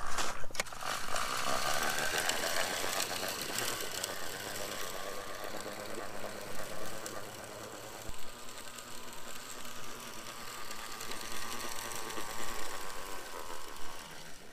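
Walk-behind broadcast spreader rattling as it is pushed across a lawn, its spinner throwing out granular humate. It is loud at first, fades as it moves away, then grows louder again near the end as it comes back.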